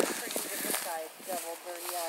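A faint voice talking some way off, in short broken phrases. There is a soft rustle of grass in the first second.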